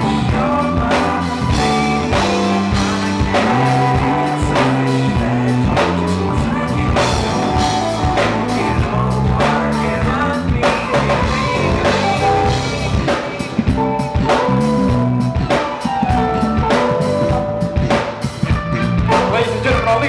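Live band playing: keyboard chords over sustained low notes, with a drum kit keeping a steady beat.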